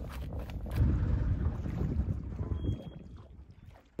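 Low rumble of wind buffeting the microphone aboard a small open boat, dying away near the end.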